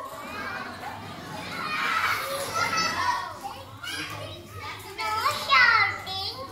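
Chatter of many young children talking at once in a hall. A single child's high voice speaks up clearly near the end.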